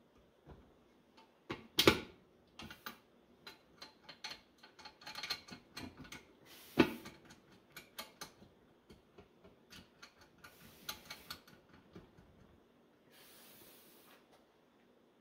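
Irregular metal clicks, taps and knocks from the parts of a HydroVac vacuum brake booster being fitted together by hand, with two sharper knocks about two and seven seconds in. A brief soft hiss comes near the end.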